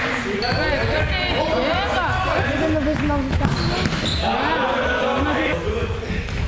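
Players' voices shouting and calling across a sports hall, with a futsal ball bouncing on the hall floor.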